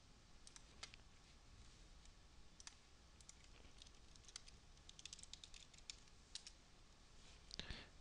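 Faint, scattered clicks of a computer mouse. About halfway through comes a quick run of keystrokes on a wireless computer keyboard as a short file name is typed.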